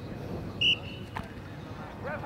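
A single short, shrill referee's whistle blast about half a second in, over a low murmur of voices.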